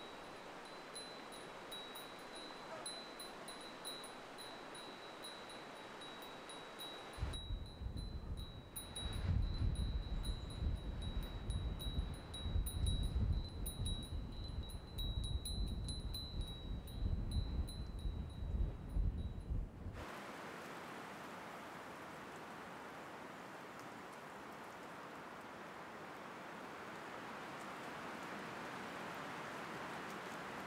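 A wind chime ringing steadily, a thin high tone with faint tinkling above it. Low rumbling gusts join about seven seconds in. Both stop suddenly about twenty seconds in, leaving only an even hiss.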